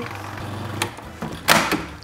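Food processor motor running on a cream cheese filling, then switched off with a click under a second in. About a second and a half in comes a loud plastic clatter as the processor's lid is lifted off.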